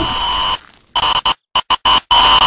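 A harsh electronic buzz with static, carrying two steady tones. It cuts out about half a second in and then comes back in short, stuttering bursts.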